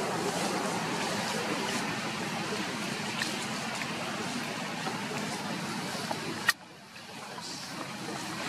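Steady outdoor background noise with no single clear source. A sharp click comes about six and a half seconds in, and after it the noise is noticeably quieter, then slowly builds again.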